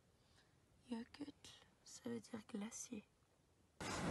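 Faint, hushed voices: a few short murmured or whispered words about a second in and again around two to three seconds in, otherwise almost nothing.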